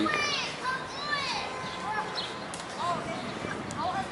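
Children's voices calling out in the background, a scatter of short high-pitched calls over a steady outdoor hum.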